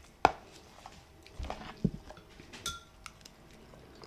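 Handling knocks and clinks on a plastic food container while eating: a sharp click just after the start, a few dull thumps in the middle, and a short ringing clink near the end.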